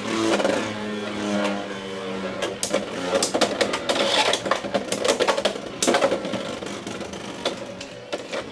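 Two Beyblade X spinning tops, Leon Claw 5-60 Point against Hell's Scythe 4-60 Low Flat, whirring in a plastic stadium just after launch, with repeated sharp clacks as they strike each other and the stadium wall.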